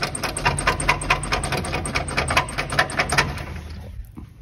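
Electric radiator cooling fan spinning with its blades ticking rapidly and regularly, about eight or nine clicks a second, over a low hum that fades toward the end. The fan is not running clear of something, which the owner calls "not ideal".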